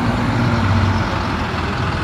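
School bus engine running with a steady low hum as the bus moves past close by.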